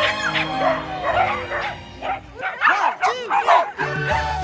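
A pack of small dogs barking and yipping over background music; about two and a half seconds in the music drops away and a quick run of barks is heard clearly.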